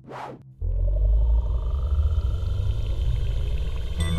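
Cartoon sci-fi machine sound effect of the brain game machine starting up: after a short whoosh, a loud, deep, steady rumble sets in about half a second in, with a faint whine rising slowly above it.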